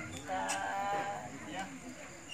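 Background voices of people, with one drawn-out, pitched call lasting under a second near the start.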